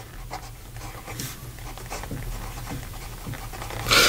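Medium steel nib of a Schon DSGN Pocket Six fountain pen writing on lined paper: soft, irregular scratches of the pen strokes forming a word, over a faint low hum.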